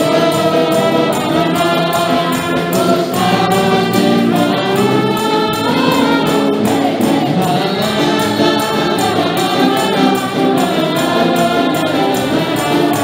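Live worship music: several women's voices singing together into microphones over a band, with a steady beat throughout.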